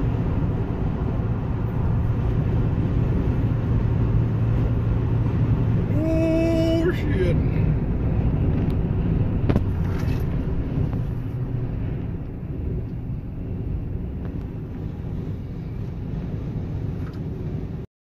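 Steady road and wind noise of a car driving at highway speed, heard from inside the cabin, with a short held note about six seconds in and a couple of faint knocks around nine to ten seconds as a semi-trailer truck ahead is blown over by high winds. The low rumble eases after about twelve seconds as the car slows.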